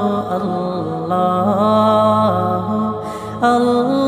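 A male voice singing an Islamic naat in Arabic, long held notes with melismatic turns over a steady low drone. The melody breaks off briefly about three seconds in before the singing resumes.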